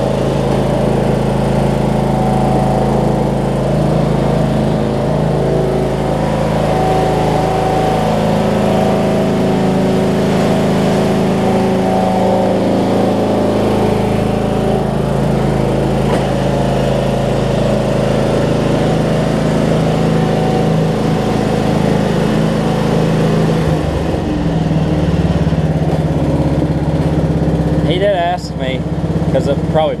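A Toro Wheel Horse riding mower's 16 hp Briggs & Stratton engine running steadily while the mower is driven at low speed. About six seconds before the end its note shifts.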